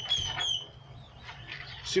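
A bird calling over and over: short, high, falling chirps at about four a second, the last one about half a second in.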